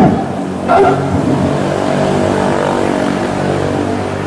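An engine running steadily, holding one even pitch, with a short shouted drill command just before a second in.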